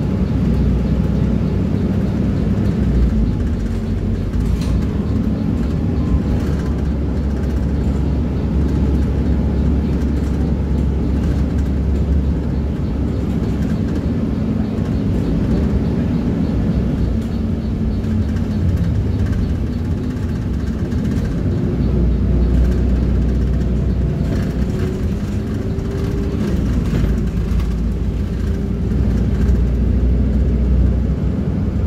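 City bus running along the road, heard from inside the cabin: a steady low engine drone with road noise, its pitch drifting up and down as the bus changes speed.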